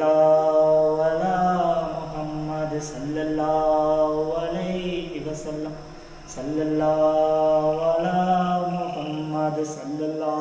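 A man's voice chanting an Islamic devotional recitation in long, drawn-out melodic phrases with held notes, starting abruptly and dipping briefly past the middle.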